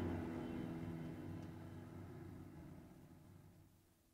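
The final strummed acoustic guitar chord rings out and slowly fades away, dying out just before the end.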